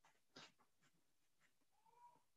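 Near silence on the call line: a faint click about half a second in, and near the end a faint short tone that rises and falls.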